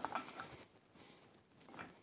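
A few faint metal clicks and scrapes of a steel hardy tool's shank being worked into an anvil's hardy hole: a tight fit, the shank rubbing on the lower part of the hole. The sounds come at the start and again just before the end.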